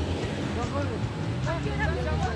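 Heavy truck's diesel engine idling with a steady low hum, faint voices over it.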